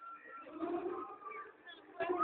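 Several people's voices calling out and talking at once, some pitched calls held briefly.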